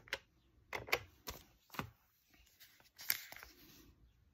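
Keys being pressed on a Texas Instruments TI-5045SV printing desktop calculator: a run of short, sharp clicks at uneven intervals as amounts are keyed in.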